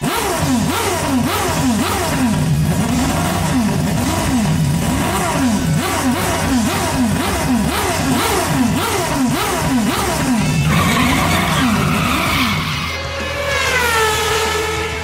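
Race car engine sound effect revving up and down over and over, about two revs a second. Near the end it changes to higher, falling whines.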